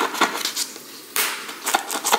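Scissors cutting through clear packing tape on a cardboard box: a few sharp snips and clicks, with a short scraping burst about a second in.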